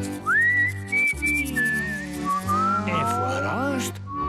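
Background music with a whistled melody: the whistle slides up into a high note, holds a few short notes, then steps down, over a steady low accompaniment. Near the end, a few quick rising-and-falling swoops sound under the melody.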